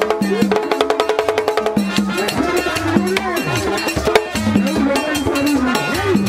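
Haitian Vodou ceremonial drums beaten with sticks in a fast, dense rhythm. A steady pitched part holds over the drums for about the first two seconds, then voices sing over them.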